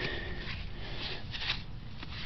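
Faint rustling and scraping as a hand works grass and soil in a small hole in lawn turf, with a few short rustles in the second half.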